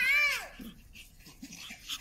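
A small dog's short, high-pitched yelp that rises and falls in pitch, then faint scattered sounds.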